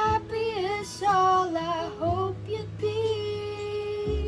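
A young woman singing a melody over a backing track, sliding between notes and ending on a long held note.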